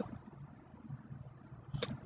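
Faint room tone in a pause between words, with one short click near the end.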